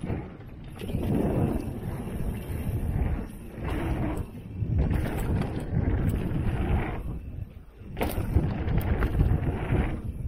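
Wind buffeting the camera microphone and tyres rolling over packed dirt on a mountain bike moving fast down a jump trail, with knocks and rattles from the bike over bumps. The noise swells and fades unevenly, drops away briefly about seven seconds in, and comes back with a sharp knock.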